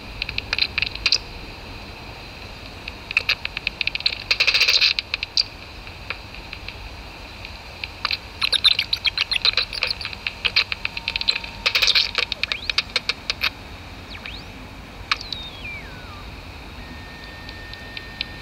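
Bat detector output of common noctule bats echolocating: irregular trains of rapid clicks and ticks in bursts, with a dense run about four to five seconds in and more between about eight and thirteen seconds, over a steady hiss. A single falling whistle sounds around fifteen seconds.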